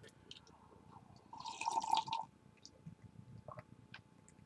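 A person sipping tea: one slurp lasting under a second near the middle, with a few faint clicks around it.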